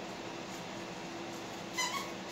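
Squeaky dog toy squeezed near the end, giving a short, high squeak or two over a faint steady hum.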